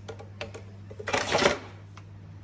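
A few light clicks, then a short clattering rattle about a second in that lasts half a second, from the cordless hedge trimmer being handled, with a steady low hum underneath.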